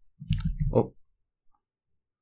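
A man's short 'oh' spoken close to the microphone, then quiet with one faint click about a second and a half in.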